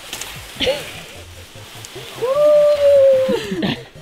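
A person's long held cry, steady in pitch for about a second and a half then dropping away, with a shorter yelp about half a second in.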